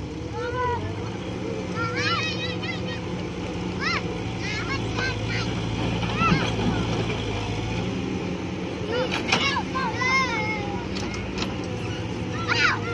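Caterpillar excavator's diesel engine running steadily, with children's high-pitched shouts and calls over it several times.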